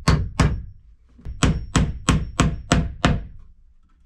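Hammer driving the nail of a plastic nail-on electrical box into a wooden wall stud. Two blows, a short pause, then about six quicker blows at roughly three a second.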